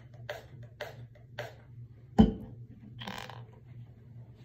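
Trigger pump-spray bottle of leave-in conditioner spray pumped three times in quick succession, short hisses about half a second apart. About two seconds in, a loud thud as the plastic bottle is set down on the counter, followed by a brief rustling hiss.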